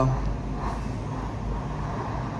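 A low, steady background rumble with a faint hiss above it, and no distinct events.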